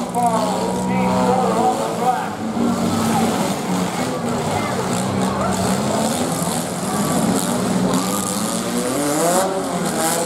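Several demolition derby cars running hard, their engines revving up and down as they push against each other in the dirt, with crowd voices mixed in.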